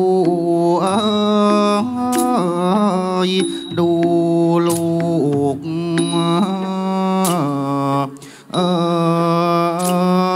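Thai classical singing for a dance-drama: one voice holding long, slowly drawn-out notes with ornamented glides between them, and a few sharp percussion strokes.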